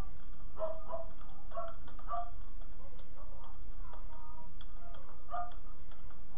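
Computer keyboard keys clicking in an irregular run of light taps as a word is typed, over a steady low electrical hum.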